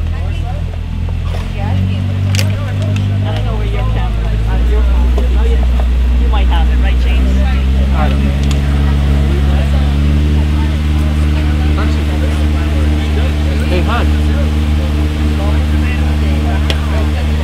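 A large vehicle engine running under load with voices in the background. It speeds up in steps over the first several seconds and then runs steadily at a higher speed.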